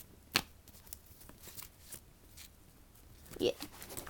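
Trading cards in plastic holders being handled and laid out, with one sharp click about half a second in, then a few faint ticks and rustles.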